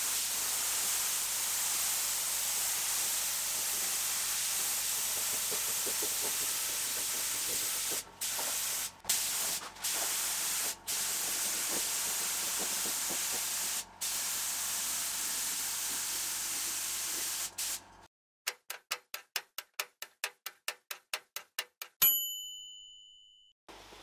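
Air spray gun spraying primer onto a steel car fender: a steady hiss, broken by a few short pauses as the trigger is let off. Near the end the hiss stops and a quick run of ticks, about five a second, is followed by a single ringing ding.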